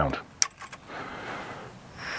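Push-button piezo igniter on an isobutane camp stove clicking three or four times in quick succession about half a second in, then a steady hiss of gas from the open burner as the stove is being lit.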